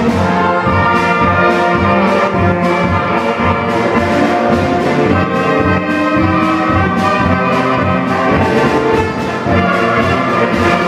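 Student concert band playing a march, woodwinds and brass together, over a steady beat of about two pulses a second in the low instruments.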